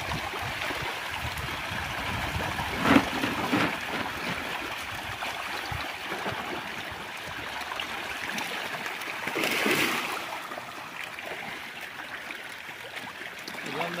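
Pangasius catfish churning and splashing at a pond's surface as they feed: a steady rush of agitated water, with louder splashes about three seconds in and again around ten seconds.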